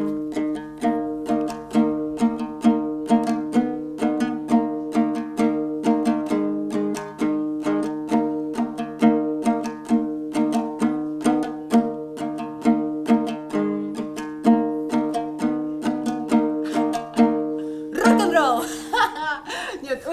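A Nogai dombra, the two-stringed long-necked lute, strummed in a steady repeating rhythm. The open strings drone under a simple tune played by a beginner.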